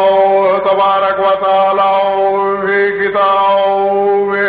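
A man chanting in a melodic recitation style over loudspeakers. He holds a steady note, with short breaks and a few brief turns in pitch.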